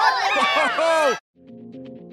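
A group of children's voices cheering and whooping, many pitches rising and falling over each other, cut off abruptly a little past a second in. Faint electronic music starts just after.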